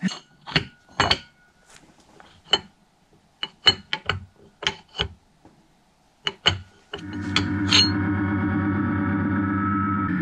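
Irregular sharp metallic clicks and knocks from machined aluminium engine mounts being handled and tried against a two-stroke engine case; the mounts are too tight against the case and won't seat. About seven seconds in, steady synth-like background music begins.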